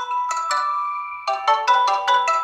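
A tablet ringing with an incoming-call ringtone for a Zangi audio call: a quick, bright melody of bell-like mallet notes, several notes a second.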